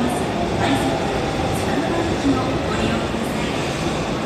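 Steady rumble of a subway train echoing through the underground station, with a voice speaking over it.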